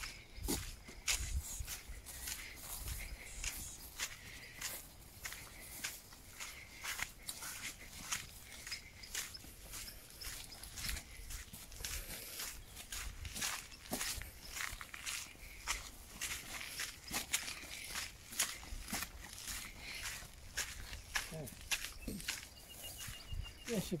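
Footsteps of people walking on a dirt track through long grass, an uneven run of soft crunches and scuffs that goes on throughout.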